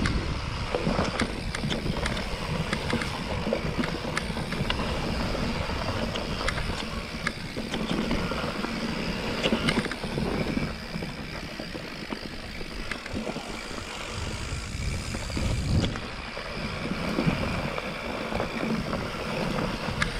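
Mountain bike rolling down a dirt forest singletrack: tyre rumble on the trail with wind buffeting the camera microphone, and many short rattles and clicks from the bike over bumps and roots. It gets a little quieter from about halfway.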